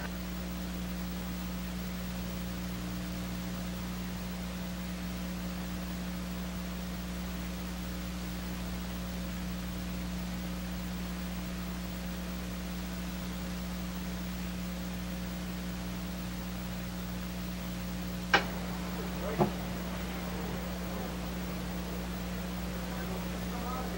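Steady hiss with a low electrical hum from an old recording's audio track, with no other sound. Two brief clicks come close together near the end.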